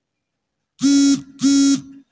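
Two short, loud buzzing tones, each under half a second and held at one steady pitch. The first comes about a second in and the second follows half a second later.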